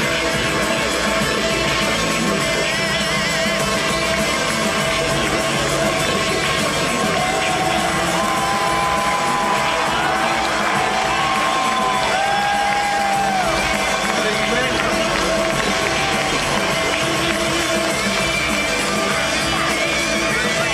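Loud live rock music from a concert PA: the band's instrumental opener, driven by electric guitar and drums, with held and sliding guitar notes. The audience cheers and whoops over it.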